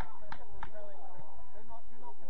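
Players' voices calling across a soccer field, with a run of sharp clicks about three a second in the first second.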